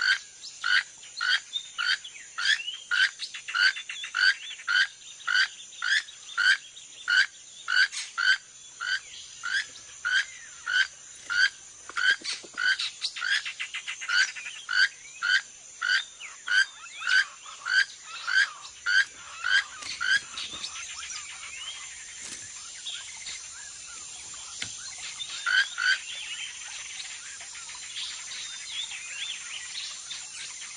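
Keel-billed toucan calling: a croaking call repeated about twice a second for some twenty seconds, then giving way to softer, scattered bird and insect calls with a few more croaks late on.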